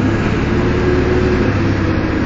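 Steady engine hum and road noise from inside a moving road trolley, with a steady tone above the drone.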